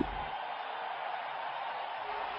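Steady, even background noise like a low hiss or distant murmur, with no distinct events.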